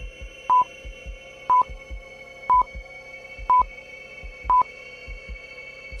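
Countdown timer sound effect: five short, high, identical beeps, one a second, over a faint steady drone.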